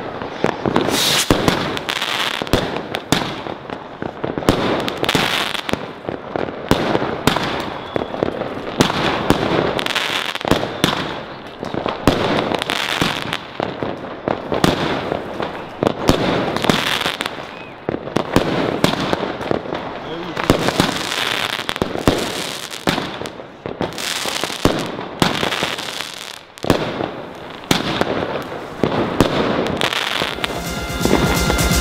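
A Dr. Pyro 16-shot consumer firework battery firing its shots one after another: a run of loud launches and aerial bursts at irregular spacing, often a second or less apart, lasting the whole half-minute effect.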